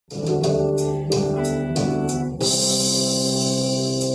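Electric guitar, a Les Paul-style solid-body, played over a rock backing track of drums and keyboards: a run of notes with drum hits, then about two and a half seconds in a cymbal crash and a held chord.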